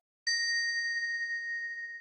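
A single bell-like chime sound effect, struck once about a quarter second in and ringing out, fading slowly.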